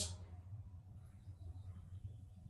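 Quiet room tone with a faint, steady low hum and no distinct sounds.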